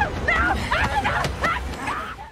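A commotion of many short, sharp cries in quick succession over a steady low rumble.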